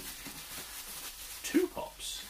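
Rustling and crinkling of bubble wrap and cardboard packing as hands dig through a shipping box. A brief voiced sound from the man comes near the end.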